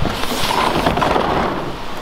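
Sliding glass patio door rolling open along its track, a steady rushing rumble.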